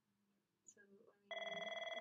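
Telephone ringing: a steady, fast-fluttering electronic ring that starts suddenly about a second in, after a quiet start.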